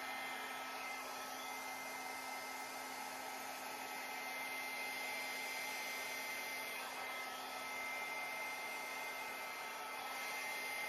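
Handheld hair dryer running steadily, blowing wet acrylic paint across a canvas. It makes a constant rush of air with a few faint steady tones.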